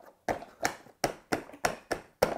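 A hand tapping on the plastic drum of a toy cement mixer truck in its box: a quick series of about six taps, about three a second.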